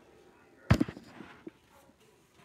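One sharp knock about two-thirds of a second in, followed by a few faint ticks and light rustling, as a frozen pizza and its cardboard and plastic packaging are handled.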